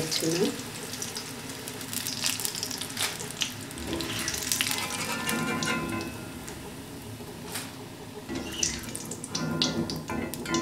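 Corn chips frying in hot oil in a wok, a steady sizzle, with scattered metal clinks as a wire strainer ladle scoops them out and tips them into a steel colander.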